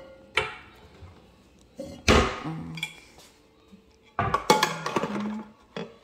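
A stainless steel tumbler clinking and knocking as it is set on the base of a single-serve coffee maker, with one loud knock that rings briefly about two seconds in. Near the end a short pitched, tune-like sound follows.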